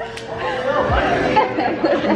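Young women chattering and talking over one another, the words not clearly made out.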